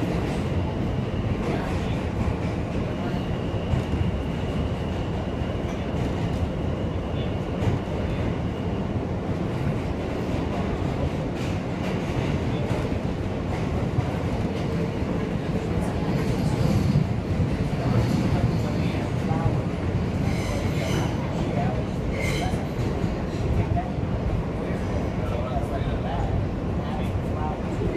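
Inside an R160A subway car running between stations: a steady, loud rumble and rattle of the wheels on the track. A thin, high, steady whine runs for several seconds a few seconds in, and brief higher rattles and squeaks come about two-thirds of the way through.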